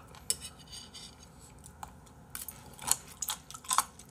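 Crunchy chewing of raw spoon worm (gaebul) close to the microphone: a scattering of short, crisp crunches, heard as "오도독" (crunch-crunch), mixed with chopsticks clicking against the dish.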